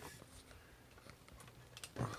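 Near silence: room tone, with a few faint clicks in the second half and a slightly louder one at the very end.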